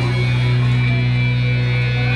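Instrumental backing of a slow Thai love ballad, holding steady sustained chords with a strong low note in a gap between sung lines.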